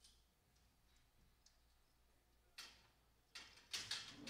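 Near silence with a few sharp clicks and knocks, which come more thickly and loudest in the last second and a half.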